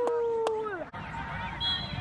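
A spectator's long, drawn-out cheering shout ("Let's gooo"), held on one pitch and falling away just under a second in, followed by quieter open-air sideline background.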